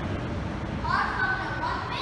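Steady traffic noise from the freeway, with people's voices talking over it from about a second in.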